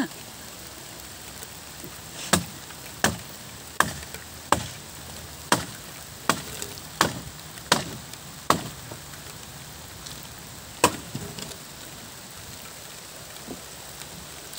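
About ten sharp knocks of a hand tool striking the wooden slats of a hut as it is being torn down, roughly one every three-quarters of a second, with a last knock a couple of seconds later.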